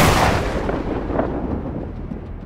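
A cinematic boom sound effect: one sudden heavy hit that dies away over about a second and a half, with a low rumble under it.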